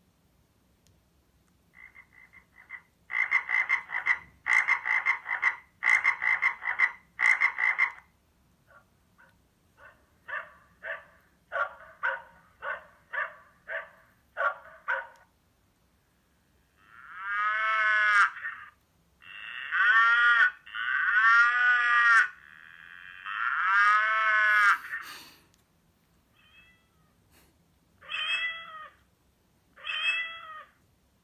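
Sagem myC2-3 mobile phone playing its built-in ringtones one after another through its small speaker. First comes a rapid pulsed tune, then a run of short beeps about two a second, then long tones that rise and fall in pitch, and short chirps near the end.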